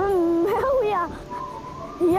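A child's voice lets out a long, wavering grieving cry that rises and falls in pitch and breaks off about a second in. A soft steady musical drone carries on under it and after it.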